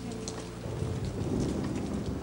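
Rain falling, with a low rumble of thunder that swells about a second in.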